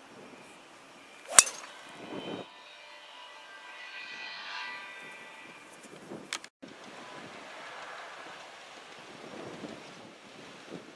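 Golf driver striking a teed ball: one sharp, loud crack about a second and a half in, followed by open-air background noise with some wind.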